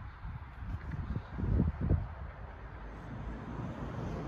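Low outdoor background rumble with wind on the microphone, and a few soft thumps between one and two seconds in.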